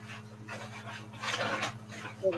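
A man's breathing close to a microphone during a pause in speech: a short breath, then a louder, longer one about a second in, over a steady low electrical hum.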